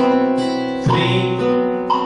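Flamenco guitar with a side sound port, chords struck about once a second, each left to ring and fade before the next.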